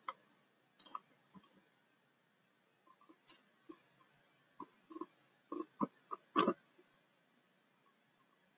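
A few faint, scattered clicks and taps, short and irregular, with the loudest cluster about five and a half to six and a half seconds in.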